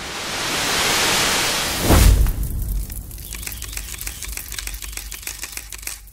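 Intro sound effects: a hiss of noise swells for about two seconds into a hit with a low boom, followed by rapid crackling clicks that fade away.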